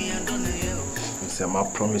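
Steady, high-pitched cricket chirring, with a voice starting to speak near the end.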